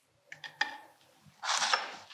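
Faint clicks of a metal spoon against a ceramic plate as fig jam is dolloped on, then a short rustle about one and a half seconds in as dressed spinach leaves are handled.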